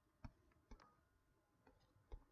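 Near silence with three faint, sharp clicks from a computer's controls, spread unevenly, as the on-screen document is scrolled.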